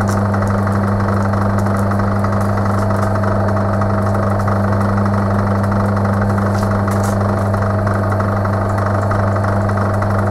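Metal lathe running at a steady speed, its motor giving a constant low hum with a faint higher tone over it and a few light ticks.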